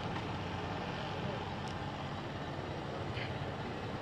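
A steady low engine hum with faint murmured conversation over it.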